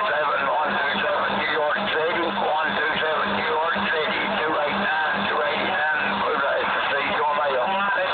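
Voices of distant CB stations coming in on skip through a Midland CB radio's speaker: continuous narrow-band radio speech that is hard to make out.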